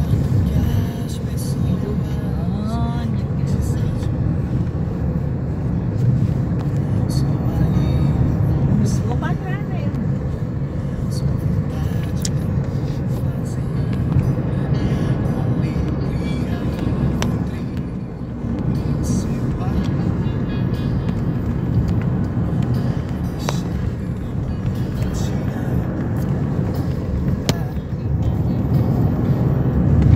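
Steady rumble of road and engine noise heard from inside a moving car at highway speed, with music and indistinct voices faintly underneath.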